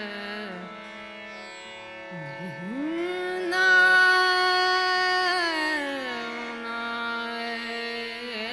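Female Hindustani classical vocalist singing a slow khyal in Raag Marwa over a steady tanpura drone. About two and a half seconds in, the voice swoops up from a low note to a long held high note, the loudest part, then slides back down about six seconds in and rises again near the end.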